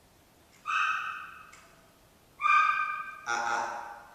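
A dog whining: two short high-pitched whines, then a lower, rougher vocal sound near the end.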